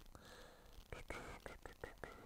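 Near silence: quiet room tone with a few faint short clicks in the second half.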